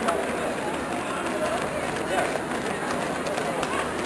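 Footfalls of a pack of runners on a synthetic running track, with indistinct voices talking in the background.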